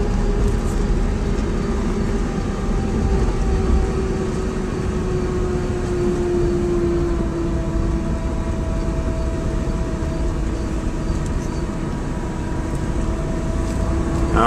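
Electric drive motor of a Porsche 914 EV conversion whining under load as the car climbs a steep hill in first gear on a nearly flat battery, heard from inside the cabin over low road rumble. The whine slowly drops in pitch over the first half as the car slows, then holds steady.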